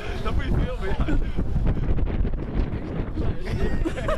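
Wind buffeting the microphone, a steady low rumble, under a group of people talking nearby.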